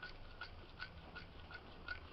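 Plastic spoon stirring runny papier-mâché paste of white glue, water and salt on a ceramic plate: faint, regular scraping taps about three a second.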